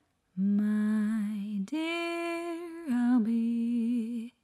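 A woman's voice singing a cappella: three long held notes with a slight vibrato, the middle one higher than the other two, starting a moment in.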